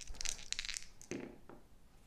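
Two small plastic dice rattled together in a cupped hand for about a second, a quick clicking clatter, then rolled onto a cloth play mat.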